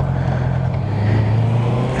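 Honda CB650F's inline-four engine running steadily while riding, with wind and road noise; the engine note steps down a little about halfway through.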